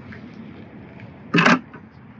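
Powder-coated steel wire basket dropped into a plastic cooler, landing with one short clunk about one and a half seconds in, over a faint steady background.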